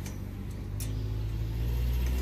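A motor vehicle's engine, a low steady hum that grows louder through the second half. A single light click about a second in.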